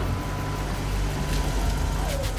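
Low, steady engine rumble of a Lincoln Continental's V8 as the car rolls along.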